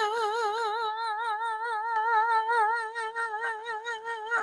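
A solo voice in a gospel worship song holding one long, high note with an even vibrato.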